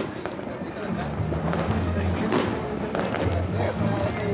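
Dense crackling hiss of fireworks over background music with a repeating bass line.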